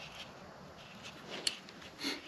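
Faint rubbing and handling noises of fingers working a small screw and the motorcycle speed sensor into its metal bracket, with one sharp click about one and a half seconds in.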